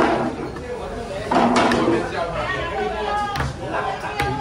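Overlapping chatter of several people talking at once in a large, echoing coffee-shop hall, no single voice standing out, with a louder stretch about a second and a half in.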